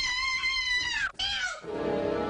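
A person's long, high-pitched scream, held on one pitch, that bends down and breaks off just after a second in. A second short cry follows, then steady low music.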